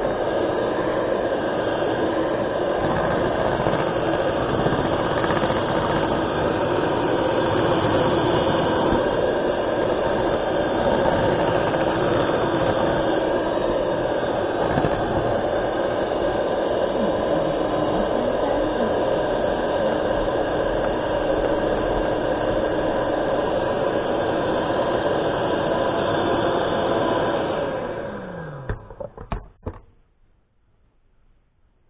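Electric hand mixer beating thick cookie dough in a stainless steel bowl, running at a steady speed. About 28 seconds in it is switched off and its whine falls away, followed by a few light knocks.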